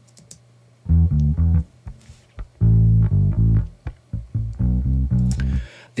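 A bass line played back from a mix, unprocessed: a phrase of low notes starting about a second in, with one longer held note in the middle. It sounds okay but a little muddy, especially in the low end, before any EQ is applied.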